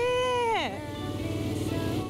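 A woman's drawn-out, delighted exclamation, held and then falling in pitch, ending about two-thirds of a second in. Under it run steady background music and the hum of a motorcycle engine under way.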